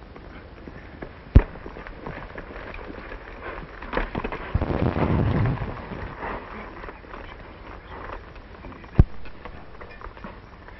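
Two gunshots: a sharp crack about a second and a half in, and a second one near the end. Between them, a noisy stretch of rough commotion rises and falls around the middle.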